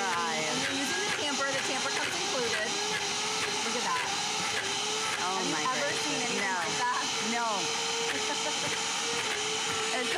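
Dash high-speed blender running at full power, grinding peanuts alone into peanut butter, strong enough to draw out the nuts' own oil. It is a steady, loud whir with a wavering pitch, and its motor note settles into one steady tone from about halfway through.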